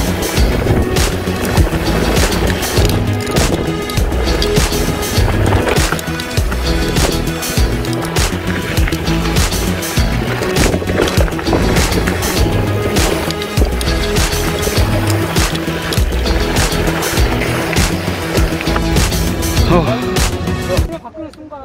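Background music with a steady beat over the rolling rumble and rattle of a mountain bike riding down a dirt trail.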